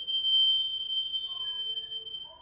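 A steady, high-pitched whistle-like tone held at one pitch, with a fainter, lower steady tone beneath it.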